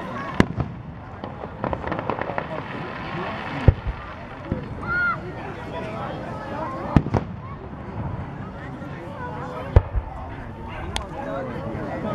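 Aerial firework shells bursting overhead: about five sharp bangs a few seconds apart, with a run of crackling between about one and a half and three and a half seconds in.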